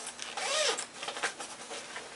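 Rustling and scraping as a bag is rummaged through and a dulcimer noter is drawn out of it, with a scatter of small clicks and knocks.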